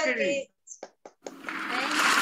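Applause from several people heard through a video-call connection, starting about two-thirds of the way in and building into steady clapping.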